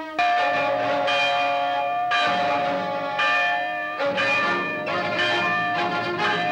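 Church bells ringing for a wedding: a new stroke about once a second, each ringing on at several pitches into the next.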